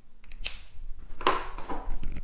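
A sharp click about half a second in, then a brief scraping rustle a second later: handling noise from hands and tools on the wooden floorboards.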